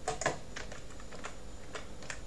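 A few separate computer keyboard keystrokes: about six light clicks, irregularly spaced.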